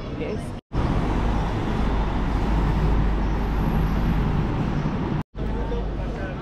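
City street traffic noise: a low vehicle rumble and road noise with people talking in the background. It cuts out to silence twice, about half a second in and near the end.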